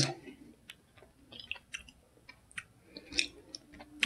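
A person chewing a crunchy Nature Valley granola cup with pecans in it: faint, scattered crunches and small mouth clicks.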